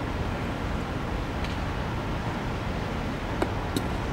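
Steady rushing wind noise on the microphone, with two sharp clicks close together near the end as a pitched baseball is caught in the catcher's leather mitt.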